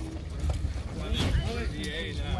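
Wind rumbling on the microphone, with indistinct voices of people talking nearby, clearest in the second half.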